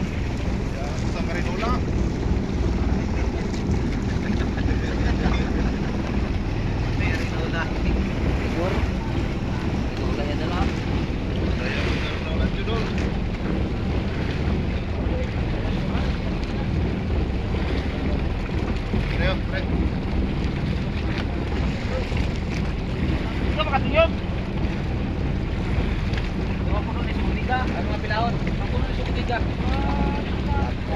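Steady low rumble of wind on the microphone and sea water around an outrigger fishing boat, with scattered shouts from the fishermen working the net.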